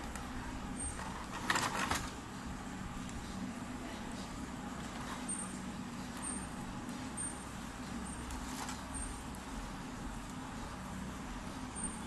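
Clear plastic packaging handled as headphones are lifted out of their tray: a short crackle about a second and a half in, then fainter rustles, over a steady low background hum.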